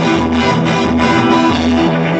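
Live ska fusion band playing loud, with electric keyboard, bass guitar and a steady drumbeat of about four hits a second under sustained held notes.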